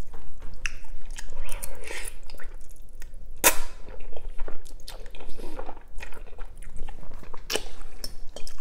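Close-miked eating of noodles: wet chewing and lip smacking with many small clicks. There is a sharp, louder click about three and a half seconds in, the loudest sound, and another near the end.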